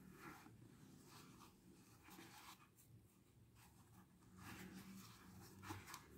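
Near silence, with a few faint soft rustles and scratches of wool yarn and a crochet hook being worked through the holes of an EVA foam sole.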